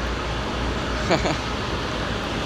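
Steady road-traffic noise from vehicles passing on an elevated highway overhead, a constant rumble heard as loud noise. A short voice-like sound glides through about a second in.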